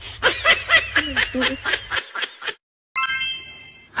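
A person laughing in quick short pulses for about two and a half seconds. After a brief silence comes a bright, ringing chime about a second long, a sound effect marking the change to the next clip.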